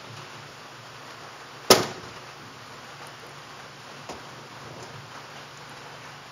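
A single sharp metal clack about two seconds in, then a faint tap about four seconds in, from the hood latch and sheet-metal hood side panel of a 1929 Ford Model A being unlatched and swung open, over steady room tone.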